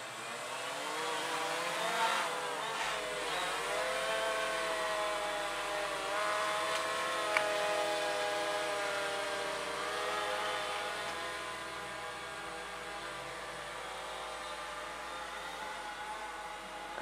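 DJI Phantom FC40 quadcopter's four electric motors and propellers whirring as it lifts off. The pitch sweeps up and down for the first few seconds, then settles into a steadier hover hum.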